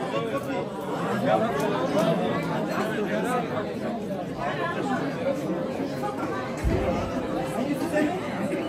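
Chatter of a large seated crowd of men, many voices talking at once with no single voice standing out.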